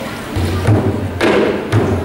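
Dhol barrel drums start playing about a third of a second in: deep, steady low beats with sharper stick strikes over them.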